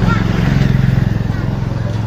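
A small motorcycle engine running steadily as it passes close by on the road, with children's voices faintly behind it.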